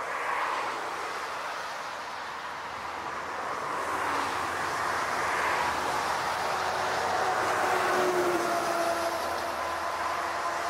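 An Airbus A380's four jet engines on final approach, a steady rushing noise that grows louder as the airliner comes in. A faint whine joins in over the last few seconds.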